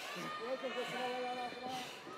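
Voices from the arena crowd, several people shouting and calling out at once, with a few drawn-out calls.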